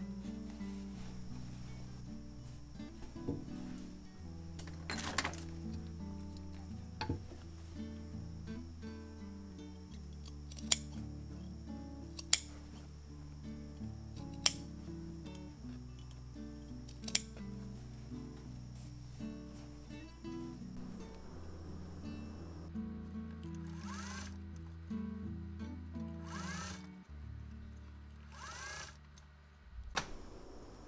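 Soft background music with a slow, stepped bass line throughout. Over it, scissors snip several times, four sharp, loud clips in the middle, as the seam allowances of a linen hat are clipped. Near the end, cloth rustles as the hat is handled.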